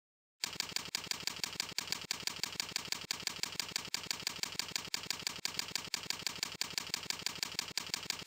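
Computer keyboard typing, a rapid, even run of keystrokes at about five or six a second, starting about half a second in.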